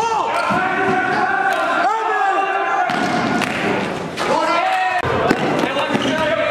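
A basketball dribbled on a gym's hardwood floor, with short rising-and-falling sneaker squeaks and voices in the hall.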